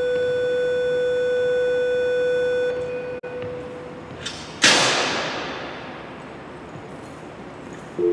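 Electronic school bell sounding through a wall-mounted speaker: one steady buzzing tone held for about three seconds, then cut off. A little past the middle comes a sudden loud rush of noise that fades away over a few seconds.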